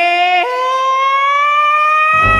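A woman singing one long held note with no accompaniment. The note steps up in pitch about half a second in, then slides slowly higher.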